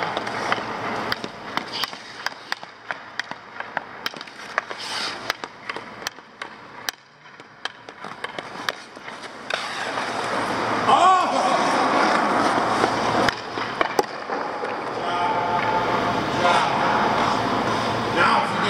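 Hockey skates on rink ice, with many sharp clicks of a stick on the puck and ice during the first half. From about halfway the skate blades scrape and carve louder as the skater turns around the net.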